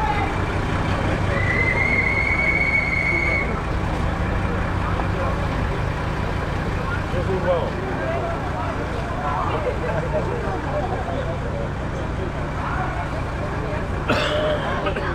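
A truck engine idling steadily under the chatter of a group of people. A high, steady tone sounds for about two seconds near the start.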